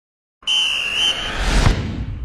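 TV sports-segment intro sound effect: a high, steady whistle-like tone, broken once briefly, over a rushing noise that swells into a low boom about a second and a half in.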